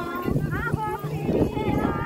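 Indistinct voices with a song playing underneath, mixed with irregular rustling and clattering noise.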